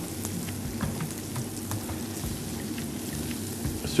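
Onions frying in oil in a pan: a steady sizzle with small crackles throughout.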